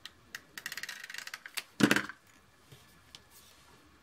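Stampin' Up! Snail adhesive tape runner laying down tape: a rapid run of small clicks for about a second, followed by one louder knock.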